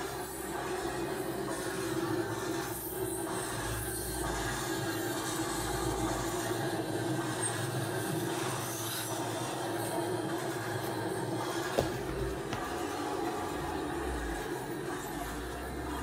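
A steady mechanical drone with intermittent low rumbling, and a single sharp click about twelve seconds in.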